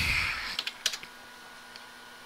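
A few computer keyboard keystrokes, sharp separate clicks clustered about half a second in and one more near the end, as a page number is typed. A soft rushing noise fades out at the very start.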